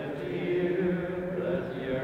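Voices chanting a slow hymn, with long held notes that move in steps.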